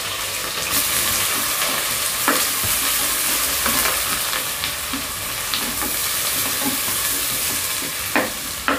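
Sliced onions and green chillies sizzling in hot ghee and oil in a pressure cooker, stirred with a wooden spatula that scrapes and knocks lightly against the pot a few times.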